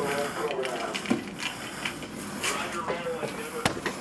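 Faint speech in the background over a steady hiss, with a few short knocks from a handheld camera being moved.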